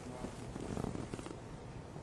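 A quiet pause in a room: faint room noise with a low, rough murmur.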